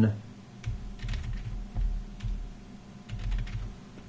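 Typing on a computer keyboard: a run of irregular keystrokes with low thuds.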